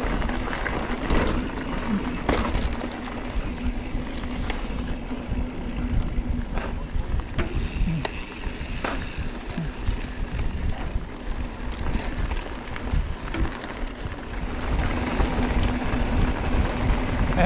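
Full-suspension mountain bike (Giant Trance 3) rolling fast over a gravel dirt road: knobby tyres crunching on loose stones, with scattered clicks and rattles from the bike and wind rushing on the microphone.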